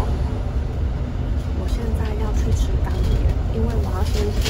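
Steady low rumble of a double-decker bus's engine and road noise, heard from inside on the upper deck, under a woman's talking.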